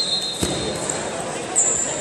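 Freestyle wrestlers grappling on a foam mat in a large hall: a thud on the mat about half a second in, over voices of coaches and spectators. A shrill whistle tone dies away at the start, and a brief high squeak follows near the end.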